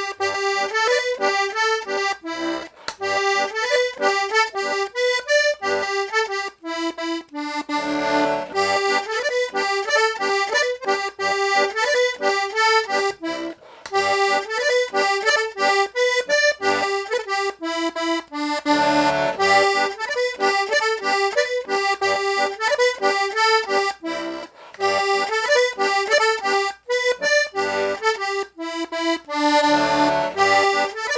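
Hohner Double Ray two-row diatonic button accordion in B/C tuning, with two middle-reed (MM) voices on the treble, playing a lively tune of quick treble notes over bass-button accompaniment. A few longer held chords come about a quarter of the way in, about two-thirds in, and at the end.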